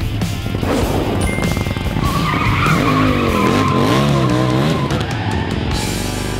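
Motorcycle engine revving up and down while the tyres squeal as it pulls away.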